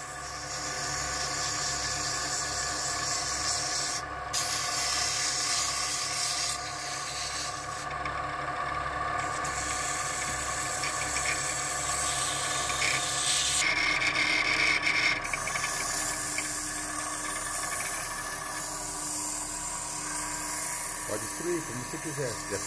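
A wood lathe spinning a pen blank while hand-held 220-grit sandpaper is pressed against it: a steady motor hum under the hiss of the abrasive on the turning wood, the hiss letting up briefly a few times.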